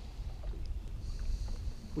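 Low, steady rumble of wind buffeting the microphone, with the faint wash of choppy water around a small open boat.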